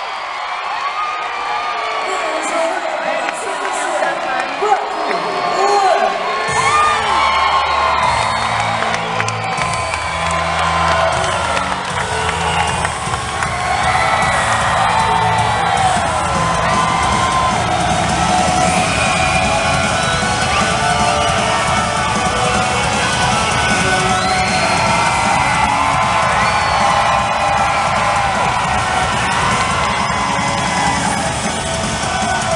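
Arena crowd cheering, whooping and yelling; about six seconds in, loud rock music with a heavy steady beat starts over the arena speakers, the winning wrestler's theme played after the match, and runs on under the cheering.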